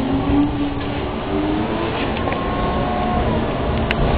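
Tatra T6A2D tram running, heard from inside the passenger car: a steady low rumble of wheels on rail under a thin motor whine that climbs slowly in pitch and stops about three seconds in. A sharp click comes just before the end.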